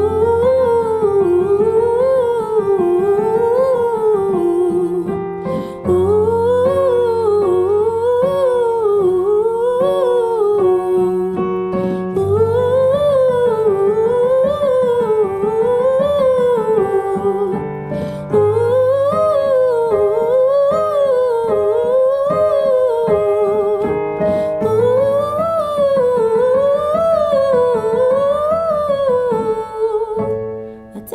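A woman sings a vocal warm-up on a sustained "ooh", running up and down an octave scale about once a second, repeated over and over. She is accompanied by electric keyboard chords that change about every six seconds.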